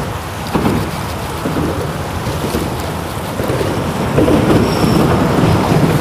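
Steady wind rumbling on the microphone, with choppy water lapping around the boat.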